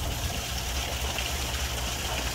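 Steady splashing and running water where a small waterfall and a floating airlift circulator's outflow pour into a koi pond, with a low steady hum underneath.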